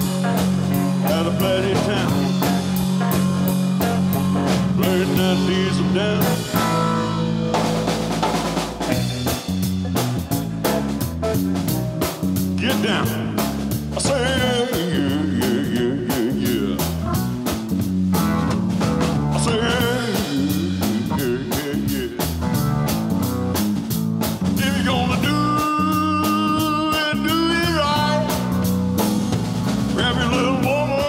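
Live band playing an Americana blues-rock song: drum kit, electric guitar and keyboard over a steady bass line, with no words in this stretch.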